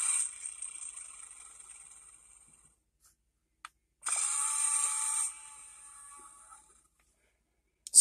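Electronic Tyrannosaurus sound effects from a toy dinosaur transport truck's small built-in speaker, set off by pressing a button on the cab: a distress-type cry and a growl. Each is loud for a moment and then fades away, with a short button click before the second.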